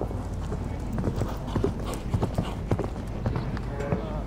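Hoofbeats of a horse cantering on sand arena footing: a run of short, irregularly spaced thuds.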